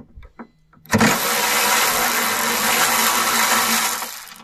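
Yato YT-82902 12-volt cordless electric ratchet running under power, driving a bolt. Its motor and gears whir loudly and steadily from about a second in for about three seconds, stopping near the end.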